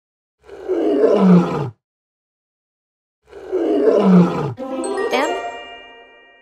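A lion roaring twice, each call about a second long and falling in pitch. Near the end comes a short chiming musical sting with a rising sweep and held ringing tones.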